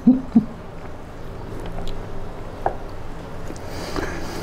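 A man's laughter stifled behind his hand: a few short hooting pulses in the first half-second, then quieter, over a low steady hum.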